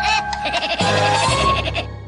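Cartoon closing music, with a cartoon woodpecker's rapid staccato laugh over the first moments, then a held final chord that begins fading out near the end.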